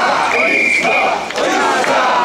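Mikoshi bearers chanting together in rhythm, the traditional "wasshoi, wasshoi" carrying call, loud and dense with many voices. A long, steady high note sounds over the chant early on.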